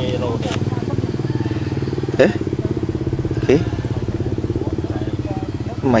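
A small engine running steadily with a low, pulsing drone. Over it, a voice gives three short, sharply rising calls: about two seconds in, about three and a half seconds in, and near the end.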